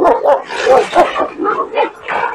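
Kangal-type shepherd dogs barking and yelping, a quick run of loud calls one after another as two dogs face each other across a fence.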